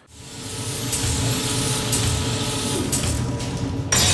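Sound-designed mechanical whirring and humming for an animated graphic. It swells in over the first second and holds steady with a few faint clicks, then a loud hit lands at the very end.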